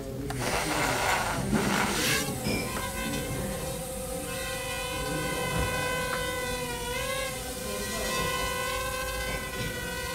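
Crazyflie nano quadcopter's motors and propellers: a noisy rush for about two seconds as it lifts off, then a steady high-pitched whine with several overtones while it hovers, dipping briefly in pitch about seven seconds in.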